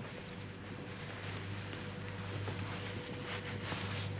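Cloth rustling as a blanket is unfolded and spread over a seated man's lap, growing louder from about a second in, over a steady low hum.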